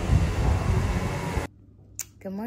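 Wind buffeting the microphone outdoors: a steady rushing noise with a heavy low rumble, cut off abruptly about one and a half seconds in.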